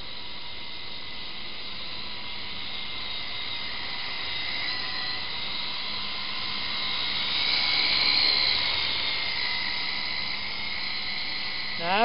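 Syma S301G radio-controlled toy helicopter in flight: a steady high electric-motor whine over a rotor hum, wavering a little in pitch and growing louder about seven to nine seconds in.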